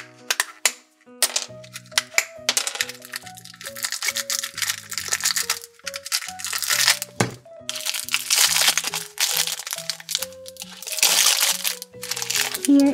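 Background music with a simple stepping melody, over the crinkling of foil and plastic blind-bag wrappers being pulled from a plastic toy ball and handled, with a few sharp plastic clicks near the start.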